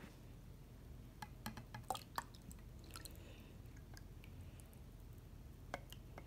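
Water being poured from a glass measuring cup into a small plastic tank of water: a faint trickle and drips, with a few light clicks, most of them in the first half.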